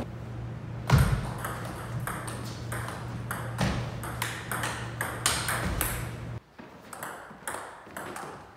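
Table tennis rally: the celluloid-type ball clicking back and forth off rubber-faced paddles and the tabletop, about three hits a second. A low steady hum runs underneath and cuts off about six seconds in, after which the clicks continue.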